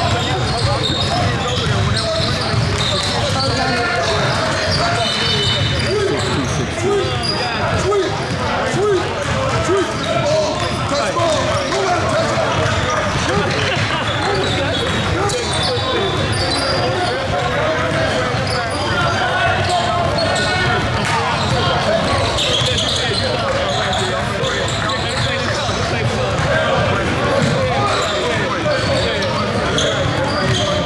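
Basketballs bouncing on a hardwood gym floor, steady throughout, with indistinct voices of players echoing in a large gym.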